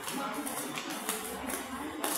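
Faint background chatter of several people talking, with a few soft knocks.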